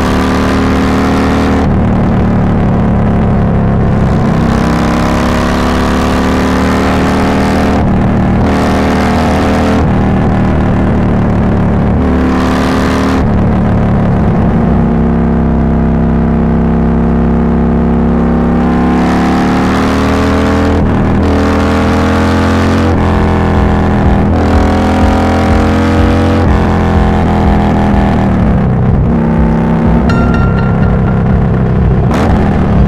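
Harley-Davidson Iron 1200 Sportster's air-cooled V-twin running through a Cobra El Diablo 2-into-1 exhaust at highway cruising speed, with wind and road noise. The engine note rises and falls with the throttle and drops away near the end as the bike slows.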